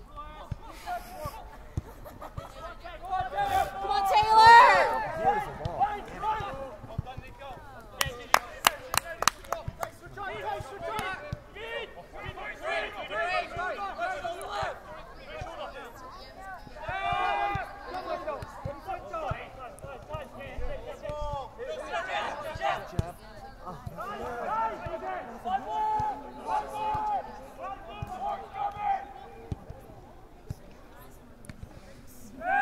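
Voices shouting and calling on an outdoor soccer pitch, with one loud shout about four seconds in and a quick run of sharp clicks about eight seconds in.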